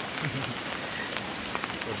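Steady rain falling on the tent, an even hiss of drops.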